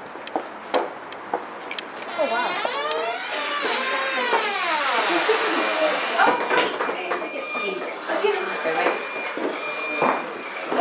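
Indistinct chatter of several people talking at once, no single voice clear, louder in the middle.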